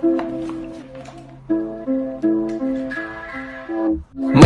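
Background music: a plucked guitar picks a melody of single notes, several a second, each fading quickly, with a brief pause about a second in.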